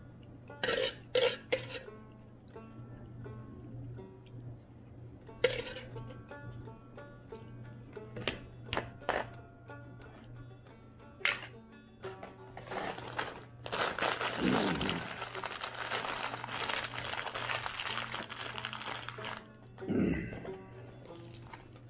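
Banjo music playing quietly, broken by a handful of sharp clinks and knocks. In the second half come about six seconds of rustling noise.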